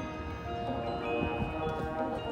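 Marching band music in a soft passage: sustained ringing chords with bell-like mallet percussion from the front ensemble.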